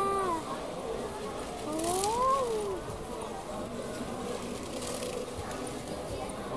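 A high-pitched voice over steady background chatter: a short falling call at the start, then a longer drawn-out call that rises and falls in pitch about two seconds in.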